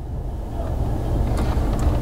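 Car engine idling, a steady low rumble, with a few faint clicks.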